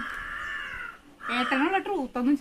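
A crow cawing: one long, steady call lasting about a second, followed by a person speaking.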